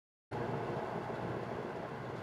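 Faint, steady room hiss with a low hum, starting abruptly a moment in after dead silence.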